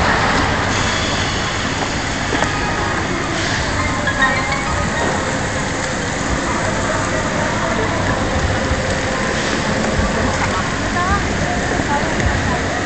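Steady rushing and splashing of water along a log flume channel, heard from inside the moving boat.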